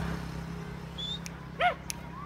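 A single short, high yelp about one and a half seconds in, over a faint chirp from a small bird.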